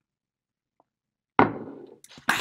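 Near silence, then a single knock about three-quarters of the way through as a ceramic coffee mug is set down on a hard surface, dying away quickly.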